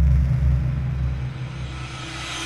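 Deep bass rumble of an animated logo intro's sound design, easing off slightly, with a hissing riser beginning to swell near the end.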